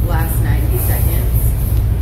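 A woman talking quietly over a loud, steady low rumble in the background.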